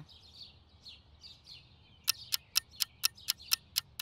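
Faint outdoor birdsong ambience. About halfway through, a run of sharp, evenly spaced ticks starts at about four a second, like a ticking clock.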